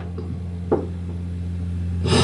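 A live band's instrumental music holding a steady low drone, with one short note struck about two-thirds of a second in.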